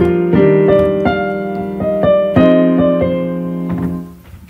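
Electronic keyboard playing a piano sound: a short phrase of held chords with a melody stepping over them, a new note about every half second, dying away near the end. It is a reharmonization of a simple arpeggiated triad figure, with richer chords than the plain version.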